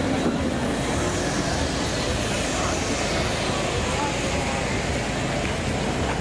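Zipline trolley whirring along a steel cable, its high whine falling slowly in pitch as the rider passes, over steady outdoor noise and voices.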